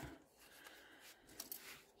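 Near silence, with a few faint handling sounds as a cardboard tray of glass gel polish bottles is slid into place and a plastic swatch stick is picked up.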